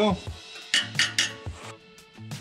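Three quick, sharp metallic clinks of hand tools on the exhaust valve bracket, about a second in, over background music with steady bass notes.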